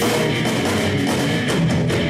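Live rock band playing an instrumental passage on electric guitars, bass guitar and drum kit, with the drums keeping a steady beat.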